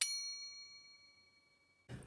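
A single bright bell ding, the sound effect of a clicked notification bell. It rings out and fades away over about a second and a half.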